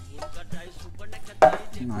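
Background music with a sharp knock about one and a half seconds in, as an emptied metal coconut-milk can is set down on the countertop.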